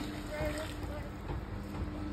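Wind rumbling on the microphone over a steady low hum, with a faint voice briefly about half a second in.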